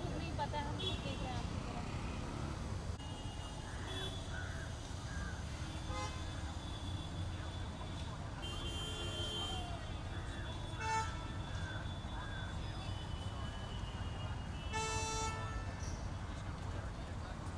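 City street traffic: a steady rumble of passing vehicles with vehicle horns honking several times, about halfway through, again a couple of seconds later and near the end. Indistinct voices in the background.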